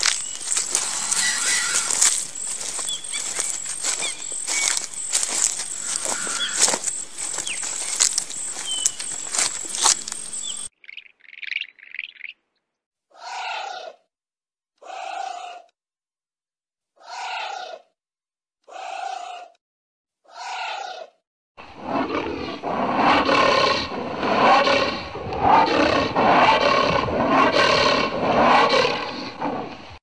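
Anteater sounds: about ten seconds of rustling with many sharp clicks, then five short calls spaced about every one and a half to two seconds, then a loud, continuous run of rough, roar-like calls.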